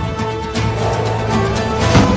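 Instrumental theme music cut as a phone ringtone: sustained notes over a low bass line, with a loud percussive hit near the end.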